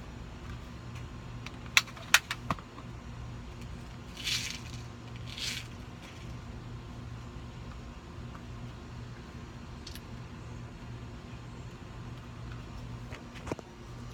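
A multi-pump BB air rifle being loaded by hand: a cluster of sharp clicks about two seconds in and single clicks later, with two short hisses in between, over a steady low hum.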